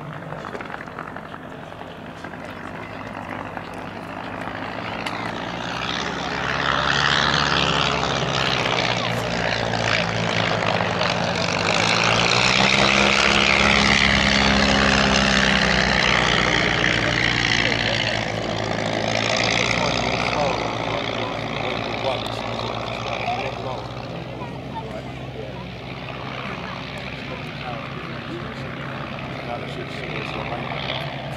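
Piston engines of two vintage biplanes flying past together: a Blackburn B-2 with its four-cylinder de Havilland Gipsy Major I, and a de Havilland DH60X Moth. The engine sound builds up over several seconds, is loudest through the middle as the pair pass close, then fades away.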